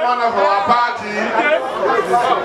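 Speech only: a man's voice through a microphone, with crowd chatter.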